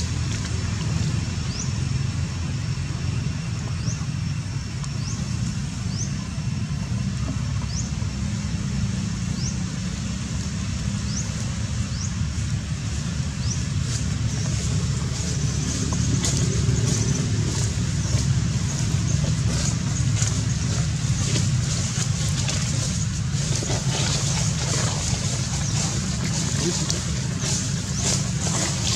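Outdoor ambience: a steady low rumble, with short high rising chirps every second or two in the first half and scattered crackling clicks in the second half.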